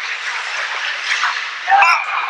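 Steady crowd noise of spectators in an ice hockey rink during play, with a single voice calling out near the end.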